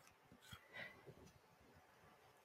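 Near silence, with a couple of faint scrapes in the first second from a metal spoon scraping the stringy pulp and seeds out of a butternut squash half.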